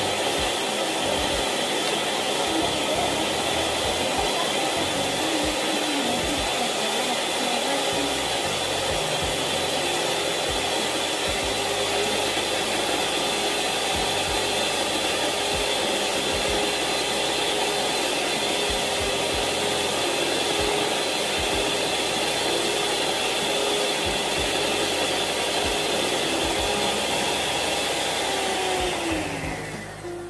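Electric hand mixer running steadily, its beaters whisking egg and oil into mayonnaise in a plastic tub. The motor's even whine stops near the end.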